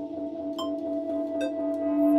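Live improvised music: two held tones from keyboard and guitar over a slow ticking beat, one tick a little more often than once a second.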